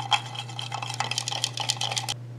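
A small utensil stirring soap batter briskly in a small cup, clicking against the cup about seven times a second.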